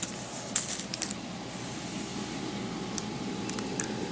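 Plastic-wrapped sticker package being handled and turned over, giving a few light crinkles and clicks, with a cluster of faint ticks near the end.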